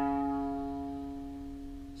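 A single note on an Epiphone semi-hollow electric guitar, the fourth fret of the A string (C sharp), ringing out and slowly fading after being picked.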